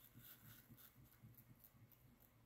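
Near silence, with faint, repeated scraping of a wooden stir stick against a plastic cup as white resin is mixed.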